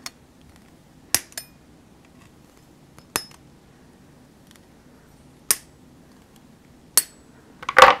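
Lawn Fawn wire cutters snipping through the thin metal joins of a set of craft dies, separating the star dies: about five sharp snips a second or two apart, then a short clatter of metal near the end.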